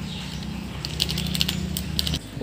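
Red spice powder poured or shaken from a container into a clay pot, with a run of light ticks and taps starting about a second in, over a low steady hum.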